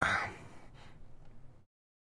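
A man's breathy exhale or sigh close to the microphone. It starts suddenly, fades over about a second and a half, then cuts off abruptly to silence.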